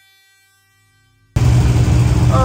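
An acoustic guitar chord rings out and fades away, then about a second and a half in it cuts suddenly to a large engine idling, loud, low and steady.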